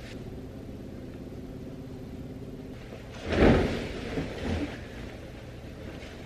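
A percale cotton duvet cover being lifted and shaken out, with one loud whoosh of fabric a little past halfway and a few softer rustles after it.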